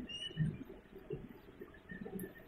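Quiet room with a few faint, scattered soft rustles of cloth and lace trim being handled and positioned, the clearest about half a second in.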